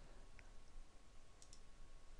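Near silence: room tone, with a couple of faint clicks about half a second and a second and a half in.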